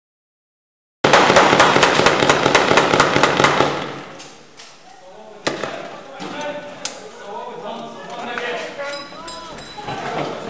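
Small-arms gunfire in a firefight: a sudden, loud stretch of rapid, overlapping shots starting about a second in and lasting about three seconds, then two single shots about a second and a half apart, with men's voices in between.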